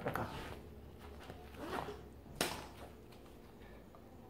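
Rustling handling sounds as things are picked up and moved, with a sharp click about two and a half seconds in.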